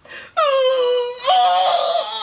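A woman's long, high-pitched wail in two drawn-out notes: the first slides down slightly, the second starts higher about a second in.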